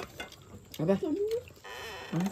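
A person's voice speaking a short questioning phrase, followed near the end by a brief steady hiss.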